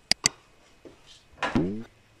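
Two light clicks near the start as a plastic spoon is set down against a clay dish, then a short sound of a woman's voice about one and a half seconds in.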